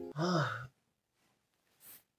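A man's short sigh, voiced, rising then falling in pitch and lasting about half a second, followed by near silence with a faint breath near the end.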